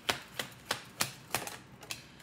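A deck of oracle cards being shuffled by hand, the cards slapping together in a quick run of sharp clicks, about three a second.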